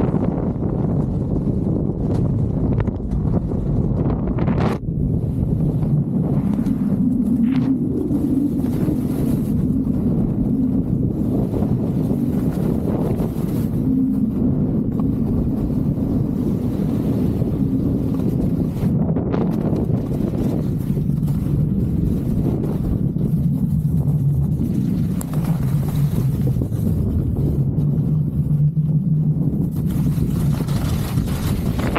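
Wind buffeting the microphone of an Insta360 X3 action camera carried downhill at skiing speed: a loud, steady low rumble, with the hiss of skis carving through snow under it.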